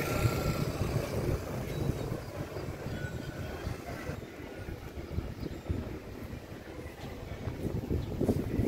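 Outdoor street ambience: a low, uneven rumble of road traffic and wind on the microphone. The higher hiss drops away about four seconds in.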